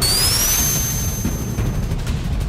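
Edited 'super speed' sound effect: a high whine that rises over the first half second, then holds steady, with a rushing noise, over background music.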